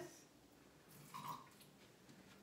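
Near silence: room tone, with one brief faint sound about a second in.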